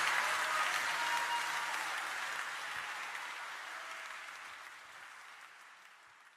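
Audience applause, fading out steadily over several seconds.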